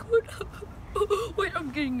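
A boy's voice in short pitched utterances without clear words, the last one sliding down in pitch near the end.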